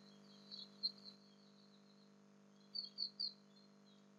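Faint bird chirps in two short clusters, about half a second in and again near three seconds, over a steady low electrical hum.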